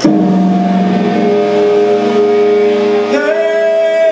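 Electric guitar through an amplifier: a loud chord struck at once and left ringing steadily. About three seconds in, a higher note slides up in pitch and holds.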